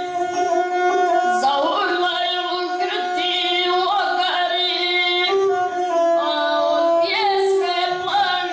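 A boy sings in a child's voice to his own gusle, the single-stringed bowed folk fiddle. A steady bowed note runs under the voice's sliding, ornamented line.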